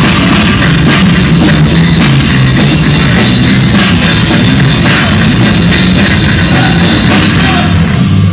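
Heavy metal band playing live and loud: electric bass and guitar over a drum kit with constant, dense drum and cymbal hits.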